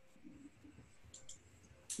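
Near silence on an open call line, with a few faint short clicks about a second in.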